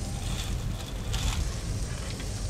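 Wind buffeting the microphone in a steady, uneven rumble, with a brief hiss a little over a second in.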